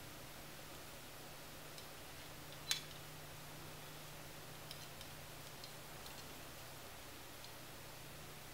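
Quiet handling of a 1¼-inch Babyliss Pro curling iron as hair is wrapped and clamped: one sharp click about three seconds in, then a few faint ticks, over a low steady hum.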